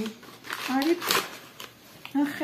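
Rustling and crinkling of packaging as a fruit pouch is pulled from its paperboard carton amid plastic bags, with a short vocal sound just before the loudest rustle about a second in.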